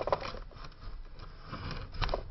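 Handling noise as a phone camera is picked up and repositioned: a quick run of clicks and rattles in the first half second, then low rustling.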